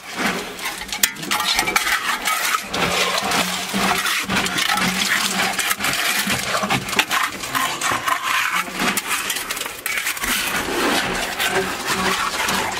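Loose rubble stones clattering and knocking against each other as they are handled, a dense run of sharp clinks and knocks.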